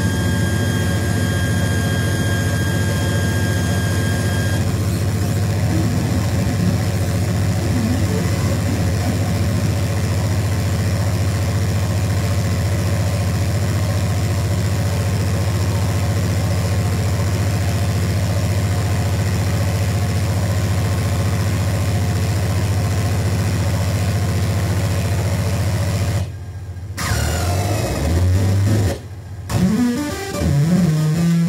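Loud, steady distorted drone from a live band's guitar and bass amplifiers, held between songs, with a high feedback whine over it that stops about four seconds in. Near the end the drone cuts out briefly twice, and the band then starts playing.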